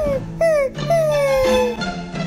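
Dog-like whining: three whines, each falling in pitch, the last one longest, over pizzicato background music.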